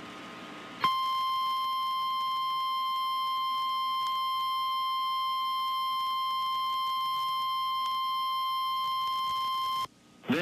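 Emergency Alert System attention signal: after a faint hiss, a single steady high beep tone starts about a second in and holds unchanged for about nine seconds, then cuts off abruptly.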